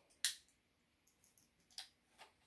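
Pull tab of an aluminium Monster Energy drink can clicking as it is worked open: one sharp click just after the start and a fainter one near the end. The can does not open cleanly.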